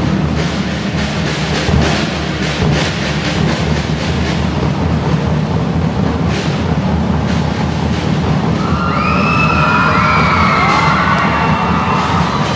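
Acoustic drum kit played in a solo: steady runs of bass drum and tom hits with cymbal strikes. From about nine seconds in, high sliding audience shouts rise over the drumming.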